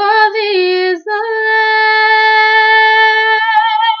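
A young woman's soprano voice singing unaccompanied: she slides up into a short note, breaks off briefly about a second in, then holds one long sustained note with a slight vibrato near its end.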